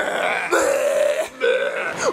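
A man's voice making drawn-out, raspy fake retching and vomiting noises: two long retches, the second shorter.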